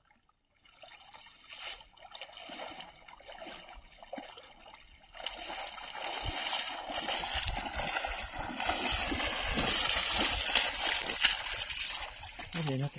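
Water splashing and pouring off a cast net as it is hauled up out of shallow creek water, with sloshing from a person wading. It grows louder about five seconds in.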